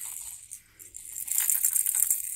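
A baby's rattle toy being shaken, a dry, high rattle that grows louder about a second and a half in.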